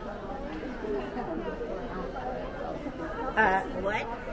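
Indistinct chatter of many shoppers talking at once in an enclosed mall. Near the end, one nearer voice briefly rises above the rest.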